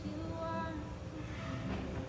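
Unamplified acoustic guitar with soft female voices singing, heard as a room recording under a steady low crowd rumble, with a brief rise of noise near the end.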